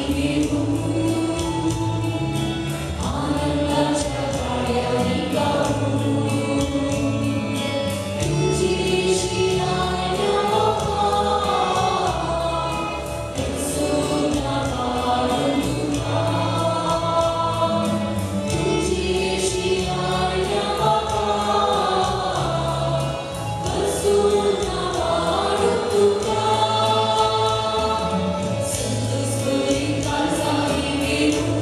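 Church choir singing a hymn with instrumental accompaniment and a steady beat.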